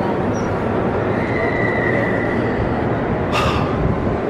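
Steady rushing noise of a busy station concourse. A faint, thin, high squeal comes in about a second in and lasts under two seconds.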